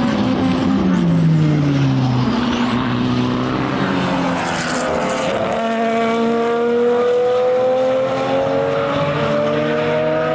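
Race car engines at full racing volume: a single-seater passes with its engine note falling away, then a BMW M1 Procar and a GT car accelerate out of a corner, one engine note rising slowly and steadily.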